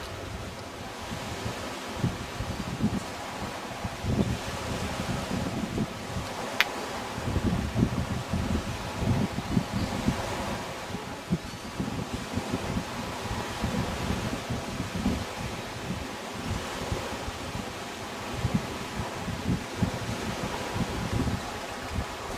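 Wind buffeting the microphone in uneven low gusts, with rustling of leaves, and a single sharp click about six and a half seconds in.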